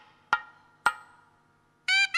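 Two sharp thavil drum strokes about half a second apart, each ringing briefly, in a pause of the nadaswaram. The nadaswaram's wavering reed melody comes back in near the end.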